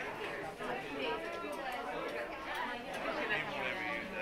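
Indistinct chatter of several people talking at once, overlapping voices with no clear words.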